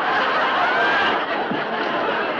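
Laughter that keeps going through the whole moment, dense and loud.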